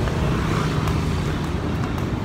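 Street traffic noise: a low, steady rumble of vehicles on the road, with the hum of a nearby engine.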